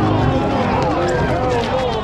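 Several men shouting and calling out over one another while running, with footsteps on the asphalt.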